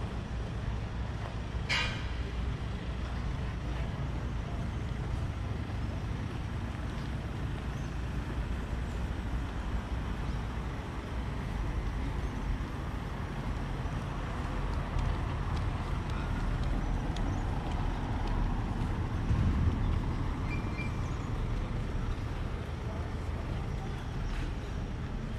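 Street ambience on foot: a steady low traffic rumble, a short sharp hiss about two seconds in, and a motor vehicle passing that swells in from about the middle and peaks a few seconds before the end.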